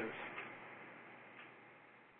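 Faint hiss on the audio line fading away as speech trails off, with a few soft isolated ticks.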